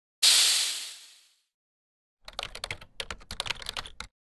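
Intro-graphic sound effects: a sharp noise burst that fades away over about a second, then after a short gap a rapid, irregular run of keyboard-typing clicks.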